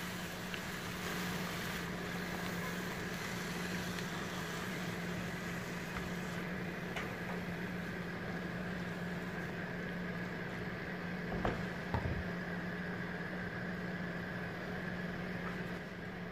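Chicken and chopped vegetables frying in a pan: a steady sizzle over a low, even hum. A spatula knocks against the pan twice, about eleven and twelve seconds in.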